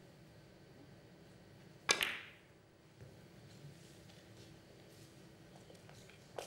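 Carom billiards shot: a sharp double click about two seconds in as the cue strikes the cue ball and it meets another ball, then a few fainter clicks of the balls off cushions and each other.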